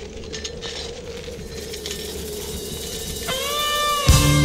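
Music beginning: a held, wavering low tone over a faint hiss, then, about three seconds in, a slide-guitar note bends up and rings on with its overtones.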